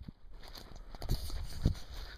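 Footsteps walking on a sandy trail: a few soft thuds about every half second, over a low rumble of wind on the microphone.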